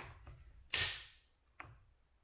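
Tightening key in a roof cross bar foot's clamp bolt giving one sharp click about three-quarters of a second in, the click that shows the bolt is tight enough. Fainter ticks from the key come just before and after it.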